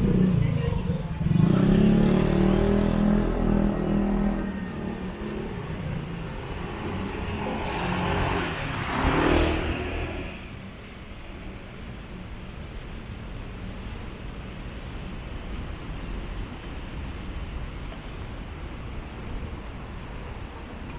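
Street traffic on a city side street: a car passes close by, its engine and tyre noise swelling and then fading about nine seconds in. After it, a steady, quieter hum of distant traffic.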